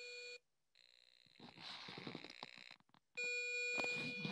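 Snap Circuits speaker driven from a Snapino (Arduino) pin, alternating two electronic tones as the output switches. A steady, louder, higher tone for "on" cuts off shortly in. After a brief gap a quieter, deep buzzy tone for "off" plays for about two seconds, and the higher tone returns near the end.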